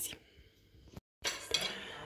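Faint clinks and scrapes of a metal fork against a ceramic plate, mostly in the second half after a brief dropout.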